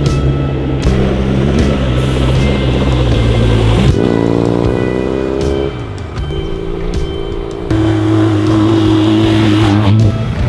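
Background music with a steady beat and held bass notes over a motorcycle's engine. About four seconds in the engine revs, its pitch climbing for over a second.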